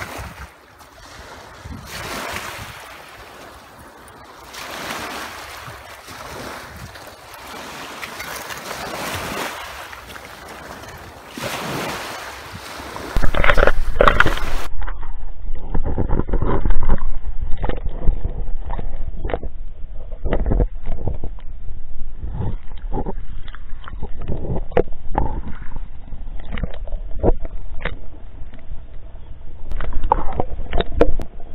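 Small waves washing onto a pebble shore with some wind, swelling every few seconds. About thirteen seconds in this gives way to the muffled sound of an underwater camera among rocks: a loud low rumble of moving water with many sharp clicks and knocks.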